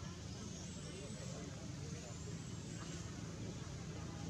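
Steady low background rumble with faint, indistinct voices.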